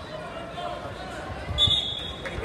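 Wrestlers' bodies thudding on the mat during a scramble, then a short, steady blast of a referee's whistle near the end as they reach the edge of the mat.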